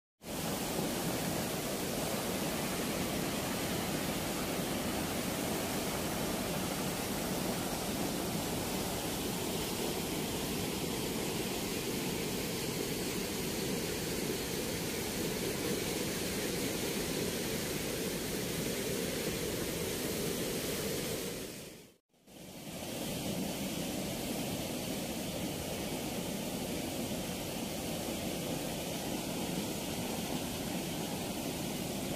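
Water rushing steadily out through the open sluice gates of a river weir, a continuous even rush of falling water. It cuts out for a moment about two-thirds of the way through, then carries on unchanged.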